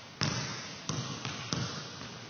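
Leather basketball bouncing on a gym floor: three sharp bounces about two-thirds of a second apart with a softer knock between the last two, each trailing off in the hall's echo.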